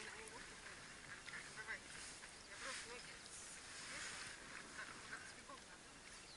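Faint sloshing and splashing of shallow water around an inflatable boat and a person wading beside it, in soft swells, with faint voices in the background.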